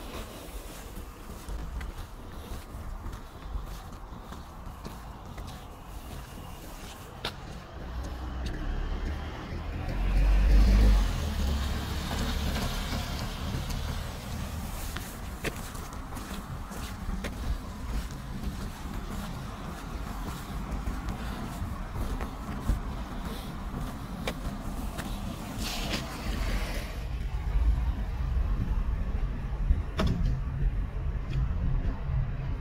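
Road traffic on a wet street: a car passes with a tyre hiss, loudest about ten to thirteen seconds in, and another goes by near the end over a steady background hum.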